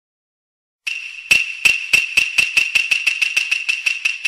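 A struck percussion instrument with a sharp, ringing high pitch, starting about a second in: about fourteen strikes, slow at first and then speeding up into a quickening roll.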